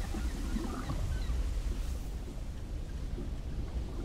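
Sea ambience: a steady low rumble of wind and open water, with a few faint short wavering calls in the first second or so.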